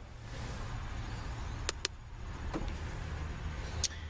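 A low steady hum with a few light clicks: two close together near the middle and one more near the end.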